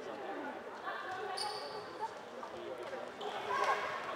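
Floorball game sounds echoing in an indoor sports hall: players' shouts and calls over the court. A brief high squeak comes about one and a half seconds in, and a light knock of stick or ball comes about two seconds in.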